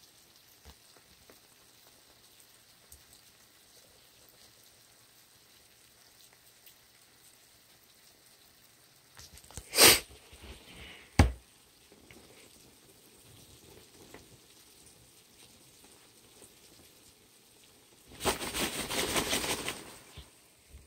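Hands handling a paper-lined plastic tub: a short loud rustle and a sharp knock about halfway through, then a couple of seconds of paper rustling near the end. Faint crackling in between.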